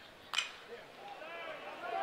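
A single sharp crack of a metal bat striking a pitched baseball, about a third of a second in, followed by faint crowd noise that swells as the ball carries to the outfield.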